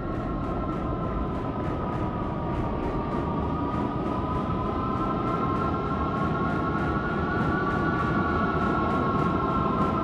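An industrial drone from the concert PA: a broad low rumble under two steady high tones that waver slowly in pitch together, with a faint regular pulse, swelling slightly louder.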